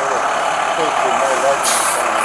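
Heavy diesel trucks idling close by with a steady running noise, and a short hiss of air near the end. Faint voices are heard under the engines.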